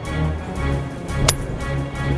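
Golf driver striking a ball once, a sharp, short click with a brief high ring about a second in, hit in the sweet spot. Background music plays throughout.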